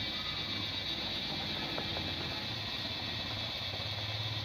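Steady high-pitched buzzing of forest insects, over a low steady rumble.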